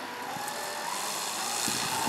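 A 3DHS 70-inch Slick radio-control aerobatic airplane running at low throttle while it taxis, a steady hum from its motor and propeller.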